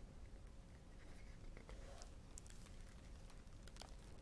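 Near silence, with a few faint paper rustles and light taps from a large picture book being handled.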